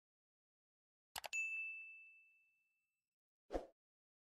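A single high, bell-like ding that rings out and fades over about a second and a half, just after a quick double click. A short dull thump comes near the end, against near silence.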